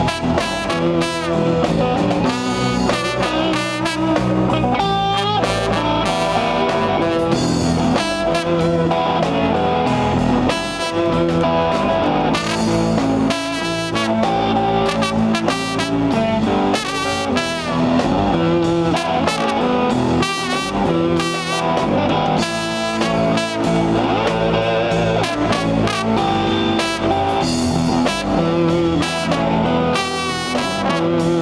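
Live blues band playing, a trombone taking the lead with held, wavering notes over electric guitar and drums.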